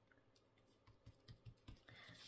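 Near silence with faint small clicks and taps of a paper tag being pressed down and handled on cardstock, coming more often in the second half.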